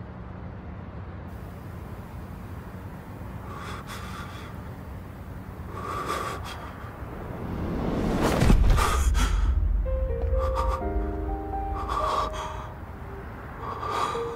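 Dramatic score with a swelling whoosh that builds to a deep boom about eight and a half seconds in, after which held musical notes come in over a low rumble. A man's sharp gasping breaths come several times between.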